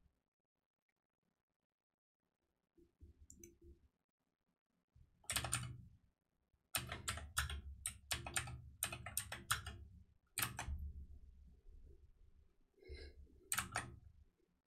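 Typing on a computer keyboard: quick runs of keystrokes starting about five seconds in, with a pause and a last few keystrokes near the end.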